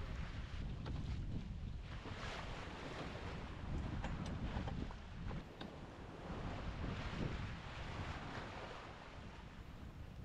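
Wind buffeting the microphone and the sea washing past a sailing yacht under way downwind, in uneven swells of noise.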